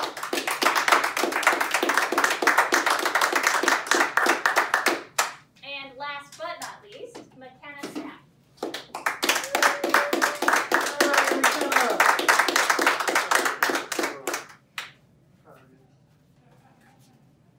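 A small group clapping hands in applause for about five seconds, a short pause with a voice, then a second round of applause for about six seconds.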